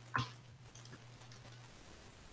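A single short computer-keyboard click about a quarter second in, over a faint steady low electrical hum that cuts out near the end.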